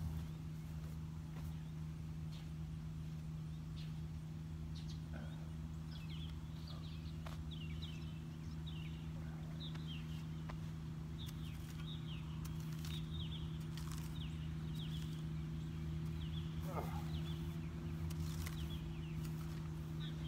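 Birds chirping in short, falling calls, many of them through the middle stretch, over a steady low hum.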